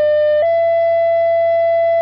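Two-tone sequential radio paging tones: a loud, steady tone steps up to a second, slightly higher tone about half a second in and holds it. This is the alert that sets off a fire crew's pagers ahead of a voice dispatch.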